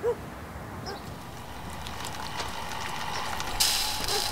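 A dog barks once at the start and once more faintly about a second in. Under it a lawn mower's engine hum grows steadily louder, and a sudden rushing hiss cuts in near the end.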